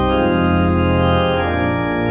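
Organ playing a prelude in sustained chords, moving to new chords shortly after the start and again about one and a half seconds in.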